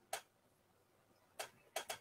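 Four short, faint clicks: one just after the start and three close together near the end.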